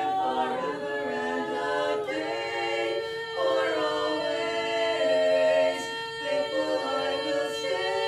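A female vocal quartet singing a cappella in several-part harmony, with long held chords.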